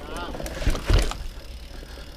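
Mountain bike ridden fast down a dirt trail: steady low tyre and wind rumble, with two hard knocks from the bike about three quarters of a second and a second in. A brief wavering high call comes near the start.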